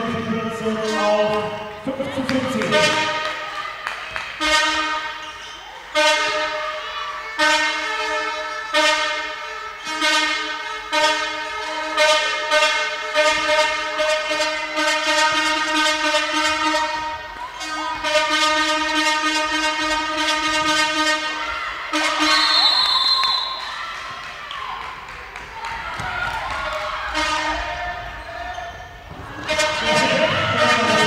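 Hall noise dominated by a horn blown in long held notes, with regular thumps roughly every second and a half, like a fan drum. A short high whistle sounds about two-thirds of the way through, and the horn fades into general crowd noise near the end.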